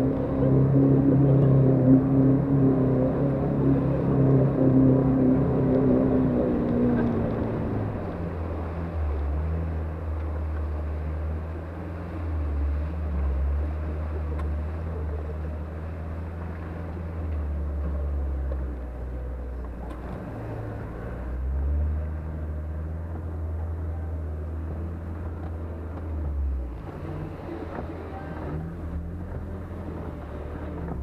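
Off-road 4x4's engine working hard as it pulls out of a muddy water splash, its note dropping about seven seconds in, then running at a lower steady note as it drives along a dirt track and across grass.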